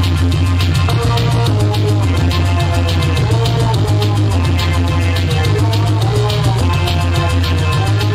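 Live band playing an electronic, keyboard-driven song: a loud, heavy synth bass line under a fast, steady beat, with keyboard melody lines above.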